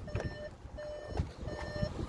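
An electronic warning beep repeating at an even pace, about three short beeps in two seconds, all at the same pitch.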